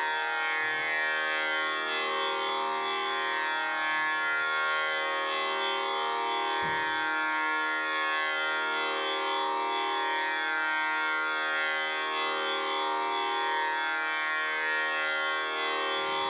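Background music: a steady, buzzy drone holding one pitch with many overtones, in the manner of an Indian classical drone such as a tanpura. There is a brief low thump about six and a half seconds in.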